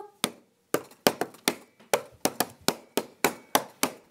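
Hand claps in a quick, slightly uneven rhythm, about four a second, during a break in the singing.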